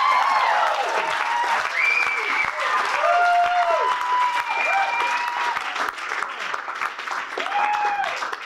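Concert audience applauding, with many cheers and whoops rising and falling over the clapping.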